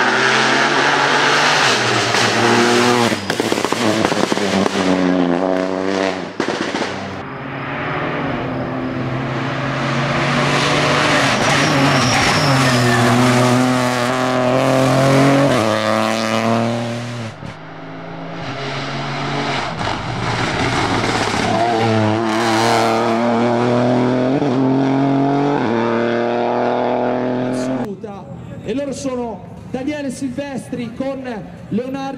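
Peugeot 208 Rally4 rally car's engine revving hard, its pitch rising and falling through gear changes as it drives the bends, heard in three stretches with brief breaks between them.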